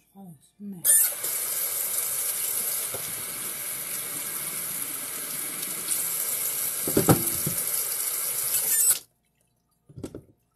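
Kitchen faucet running into the sink while a blender jar is rinsed under the stream. The water comes on about a second in and shuts off sharply about nine seconds in, with a knock near seven seconds.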